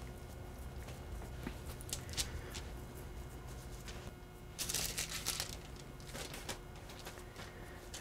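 Quiet handling sounds of hands pressing a soft cheese filling onto calzone dough on parchment paper, with a brief rustle of the paper a little past halfway.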